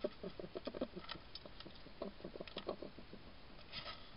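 Wild European hedgehog feeding at a dish right by the camera: quick rhythmic mouth sounds, about seven a second, in two runs with a pause between, with a few sharper clicks among them.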